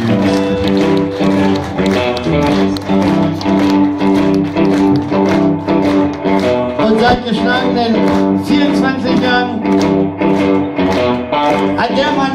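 Live blues band vamping on a steady groove: electric guitars and drum kit over held Hammond organ chords.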